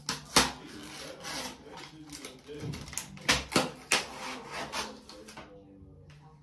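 A strip of paper scratch-off lottery tickets being handled and torn apart at the perforations: rustling and ripping, with a sharp snap near the start and three more in quick succession midway.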